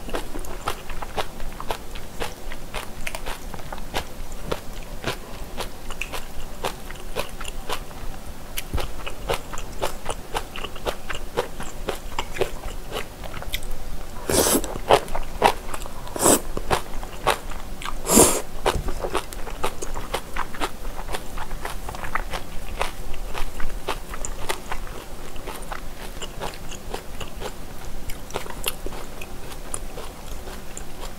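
Close-miked chewing of spicy boneless chicken feet and noodles: wet, sticky mouth sounds with many small clicks, and three louder bursts between about fourteen and nineteen seconds in.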